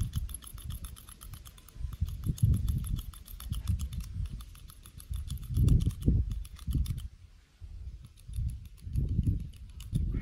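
Manual hand hair clipper clicking rapidly as its handles are squeezed and its blades cut through hair, several clicks a second, thinning out near the end. Irregular low rumbles swell and fade underneath and are louder than the clicking.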